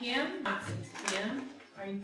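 A woman speaking into a microphone, with a short sharp clink about a second in.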